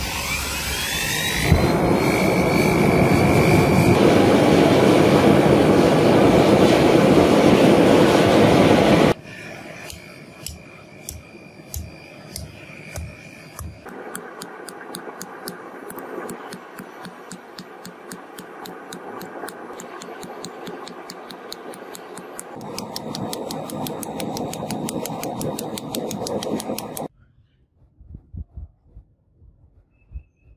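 A torch flame burns steadily as it heats a rusty steel bearing. Then comes a fast, even run of hammer strikes on red-hot bearing steel on an anvil. The sound cuts off suddenly near the end.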